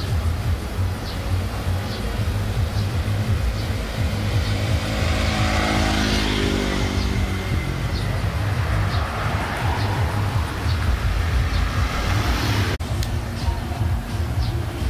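Motor scooters and cars passing along a street, one scooter engine passing close about halfway through, over music with a steady pulsing bass beat.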